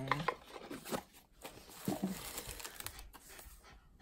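Packaging rustling and crinkling, with a few light clicks and knocks, as a small cardboard box is handled and lifted out of the crate.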